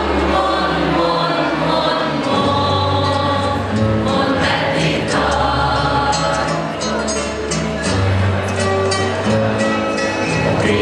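A group of young voices singing together as a choir, with an instrumental accompaniment holding long low bass notes beneath them.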